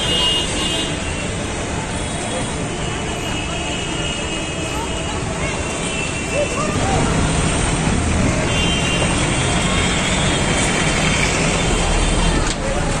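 Busy street noise: road traffic with car horns honking on and off and people's voices, growing louder about halfway through.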